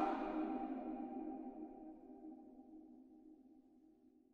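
The closing held chord of a pop mashup fading out, dying away to near silence about three seconds in.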